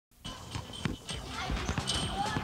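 Children's voices calling out on a schoolyard, with playground balls bouncing and being struck on the asphalt court in irregular knocks.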